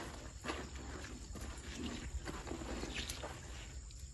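Hands scooping wet gravel and muddy water into a gold pan in a shallow stream pool, with short scrapes and splashes about once a second over a steady low rumble of running water.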